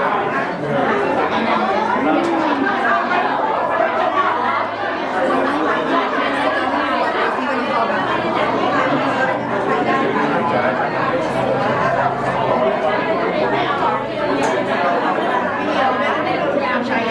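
Steady hubbub of many people talking at once in a large hall, overlapping conversations with no single voice standing out.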